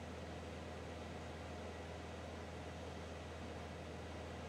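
Faint, steady cockpit noise of a light aircraft in flight: an even hiss over a constant low hum, with no change.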